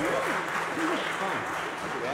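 Congregation applauding after a song, with voices mixed in; the clapping swells through these seconds and then fades.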